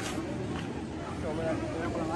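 Indistinct voices of people talking in the background, with no clear words, over a steady low outdoor rumble.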